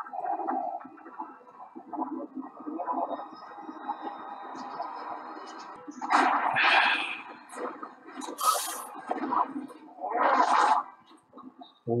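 Soundtrack of a TV drama's fight scene playing: a busy bed of sound effects with loud noisy bursts about six, eight and a half and ten and a half seconds in.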